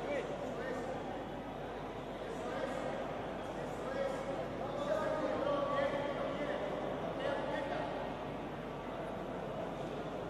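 Indistinct voices calling out from around the mat, echoing in a large sports hall over a steady background hum.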